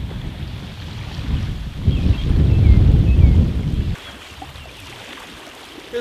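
Wind buffeting the microphone: a low, noisy rumble that grows louder about two seconds in and cuts off suddenly near four seconds, leaving a quieter background.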